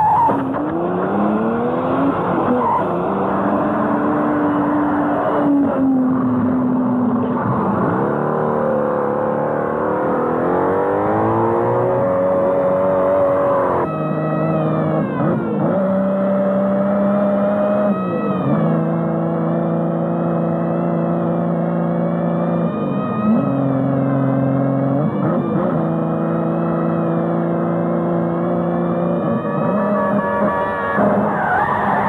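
A sports car's engine is driven hard. Its note climbs repeatedly as it pulls through the gears, then holds high with brief drops in pitch at shifts or lifts of the throttle.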